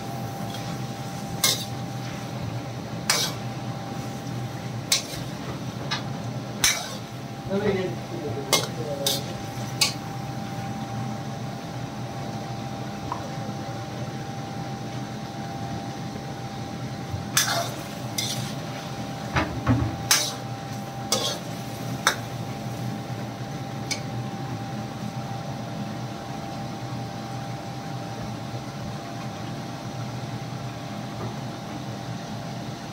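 A long steel spoon stirring chicken pieces frying in ghee in a steel karahi, scraping and clanking against the pan. The clanks come in two spells, through the first ten seconds or so and again around eighteen to twenty-two seconds in, over a steady background hiss.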